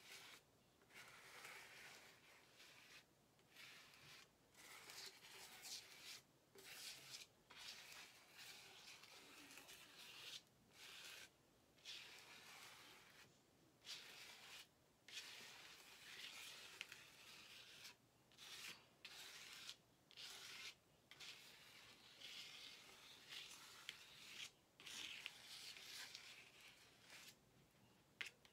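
Plastic card scraped repeatedly across wet paint on paper. The card makes faint rasping strokes, each lasting about a second, with brief pauses between them.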